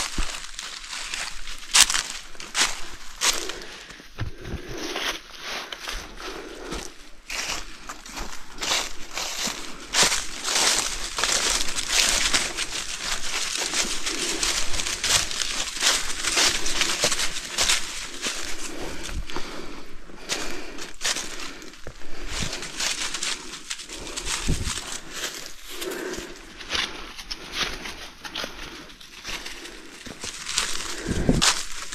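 Hiker's footsteps crunching on a dirt forest trail, a continuous run of uneven steps on an uphill climb.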